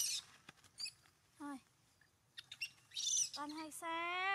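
Macaques calling: short high squeals, a brief pitched cry about a second and a half in, and a longer wavering cry that falls in pitch near the end.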